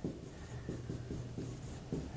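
Pen writing on a display screen: a quick run of faint short strokes as a few characters are written.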